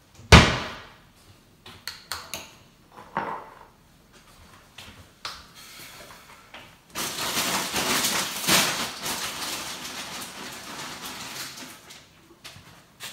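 Kitchen handling sounds: a sharp, loud knock like a door or cupboard shutting, then scattered light clicks and knocks, then from about seven seconds in several seconds of dense hissing noise that slowly fades.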